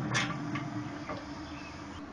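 Steady low hum of a Traeger Lil' Tex pellet grill's fan running. Just after the start comes a short scraping knock as a hand handles the grill's closed metal lid, with a few fainter knocks later.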